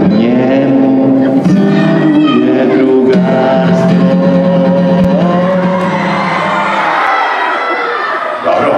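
Live singing with acoustic guitar, held vocal notes with slides between them. Near the end the song gives way to a rising noise from the children's audience, typical of clapping and cheering as a song finishes.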